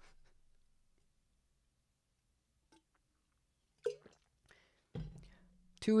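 Mostly near silence, broken by short bits of a man's voice: the fading end of a laugh at the start, a brief vocal sound about four seconds in, and a held "mm"-like filler just before he starts speaking near the end.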